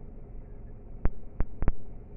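Low, steady rumble inside a car cabin, with four sharp clicks starting about a second in, the last two close together.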